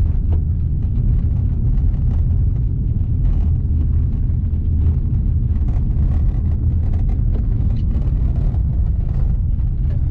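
Car driving on a gravel road, heard from inside the cabin: a steady low rumble of engine and tyres, with faint scattered ticks from the road surface.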